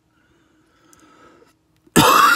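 Faint room sound with a soft breath in the middle, then right at the end a man's sudden, very loud, explosive burst of breath.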